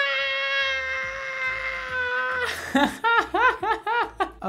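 A man's voice singing one long high note, held steady for about two and a half seconds, then a quick run of short notes that each rise and fall, like a sung riff or laughing.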